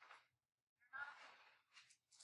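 Near silence: room tone, with a faint short breathy human vocal sound about a second in.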